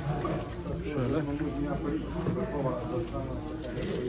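Indistinct background chatter of several men talking at once, no single voice in front.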